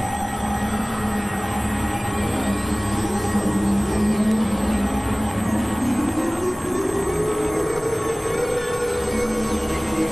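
Dense experimental electronic drone mix: several sustained tones held over a noisy wash. A tone glides upward from about six seconds in.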